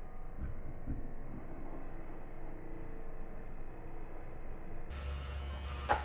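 Corded electric hair clippers running in a faint, steady buzz as they cut short hair. About five seconds in, the sound changes abruptly to a louder low hum, with a short click just before the end.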